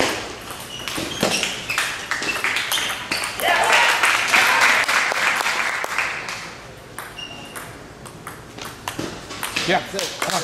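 Table tennis ball in a rally: sharp clicks of the celluloid ball bouncing on the table and struck by rubber-faced paddles, some with a short ping, over the chatter of a large hall. A short shout of "yeah" near the end.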